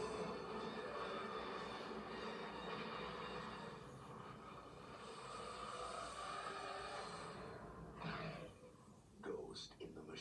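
Movie-trailer soundtrack heard through a TV's speaker: a dense, hiss-like wash of electronic sound effects that thins out about seven and a half seconds in, followed by a short hit and the start of a voice near the end.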